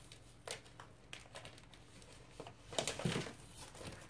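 A stiff plastic stencil sheet being handled, crinkling and rustling in a few short crackles, with the loudest cluster about three seconds in.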